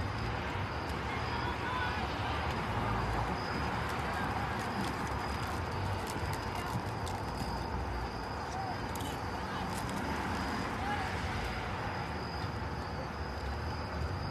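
Open-air ambience at a soccer game: a steady murmur of people talking, with faint voices calling out now and then.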